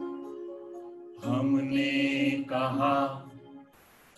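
A man and a woman singing a Hindi song together, two drawn-out sung phrases starting about a second in and breaking off just before the end. The singing is preceded by a few soft instrumental notes.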